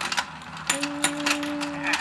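Battery-powered Let's Go Fishin' toy game running: its rotating plastic pond gives off rapid, even clicking, about five or six clicks a second. A single steady tone is held for about a second from just before the middle.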